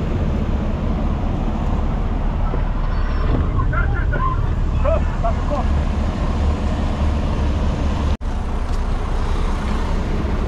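Steady low drone of a semi-truck's engine heard inside the cab, with a faint voice in the middle. The sound cuts out abruptly for an instant about eight seconds in.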